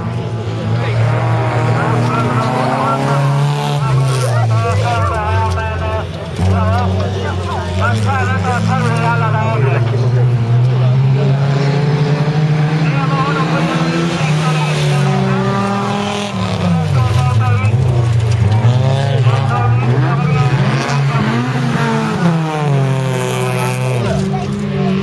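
Folkrace cars' engines running hard on a dirt track, their pitch rising and falling as the drivers accelerate and lift through the corners, with a few marked drops in revs around four to six seconds in and again around sixteen to eighteen seconds in.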